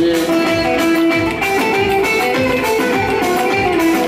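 Live Turkish folk dance music, loud and amplified: a held melody line over a steady drum beat.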